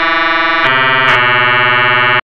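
Kilohearts Phase Plant software synthesizer holding a buzzy note: an analog oscillator run through a filter that a second sine oscillator modulates at audio rate. Its tone changes abruptly about two-thirds of a second in, turning brighter with a lower note underneath, and shifts again just after a second.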